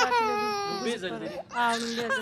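A high-pitched crying voice: one long falling wail over the first second, then a shorter cry near the end.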